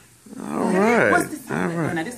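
A woman's voice exclaiming with wide swoops in pitch and no clear words. It starts after a brief lull and breaks off once near the middle before going on.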